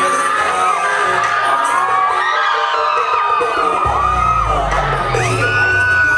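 Dance music for a stage routine playing over a crowd cheering and whooping with many high voices. A heavy bass line comes in about four seconds in.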